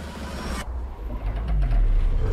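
Action-film trailer sound effects: a burst of noise that cuts off suddenly about half a second in, then a deep rumble that swells to its loudest near the end, with a low falling tone.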